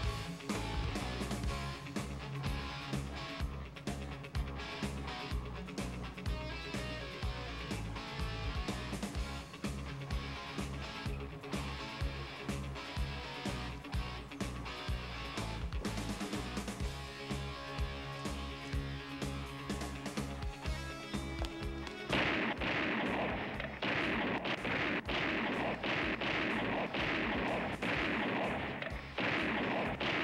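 Action-film score with a steady beat, mixed with repeated gunshots from a shootout. About two-thirds of the way in, a louder, denser and noisier stretch of shots takes over.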